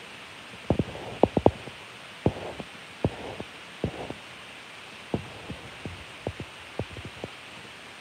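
Irregular soft low thumps and taps, about fifteen over several seconds, from a phone being handled and tapped as it films, over a faint steady hiss.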